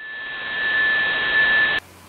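Hiss from a shortwave receiver in upper-sideband mode with no signal on the channel, band-limited and carrying a steady high whistle. The hiss swells up over the first second, holds, then cuts off suddenly near the end.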